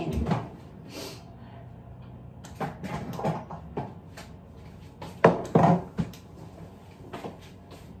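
A refrigerator door being opened and shut, with knocks and rattles of things being handled; the loudest are two sharp knocks a little past halfway.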